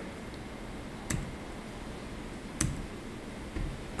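Two sharp clicks about a second and a half apart, then a fainter one near the end, over a steady low room hiss.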